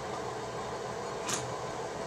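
Steady indoor background hum and hiss, like a fan or air conditioner running, with one brief hiss a little past the middle.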